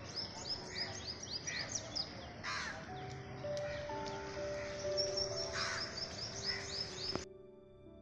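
Birds calling outdoors: a fast run of high chirps and a few harsh caws. Soft background music with long held notes comes in about three seconds in. Near the end the birds cut off abruptly, leaving only the music.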